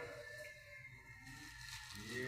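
Quiet room tone with a faint steady low hum; no distinct sound.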